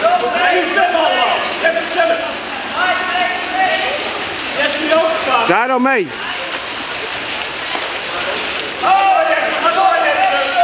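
Voices shouting and calling in an echoing indoor pool hall, over a steady hiss of splashing water. About five and a half seconds in, one loud, drawn-out yell rises and falls in pitch.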